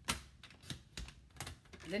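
Sliding-blade paper trimmer cutting a strip of cardstock: a quick run of sharp clicks and knocks as the blade carriage is pushed along the rail and the rail is handled.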